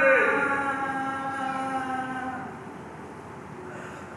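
A held chord of several steady notes swells in at the start and fades away over about two and a half seconds. A softer chord returns near the end.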